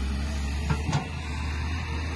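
Diesel engine of a Caterpillar hydraulic excavator running steadily as a low drone, with two brief knocks a little before one second in.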